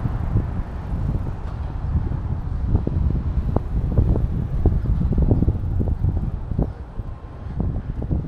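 Wind rumbling on the microphone of a handheld walking camera, with irregular light knocks through it.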